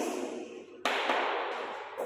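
Chalk scratching on a chalkboard as words are written, in two strokes about a second apart, each starting sharply and fading.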